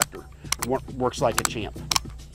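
Sharp metallic clicks of a Galil ACE 32 rifle's fire selector lever being flicked by finger, a few separate clicks with the loudest about half a second in and near the end, under a faint man's voice.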